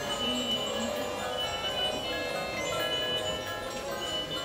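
Musical Christmas village ornaments playing tinkling, chime-like tunes, many short notes overlapping, over a low background hum.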